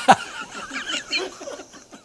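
A man laughing heartily, loudest at the start and dying away over the next two seconds.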